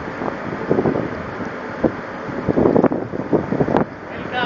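Wind buffeting the microphone in irregular gusts, strongest about two and a half to three seconds in.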